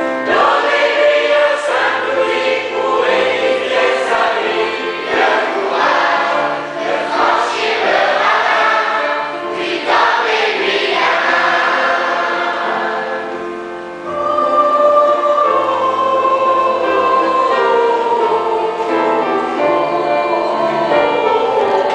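Children's choir singing with piano accompaniment. The sound briefly dips about two-thirds of the way through, then returns on long held notes.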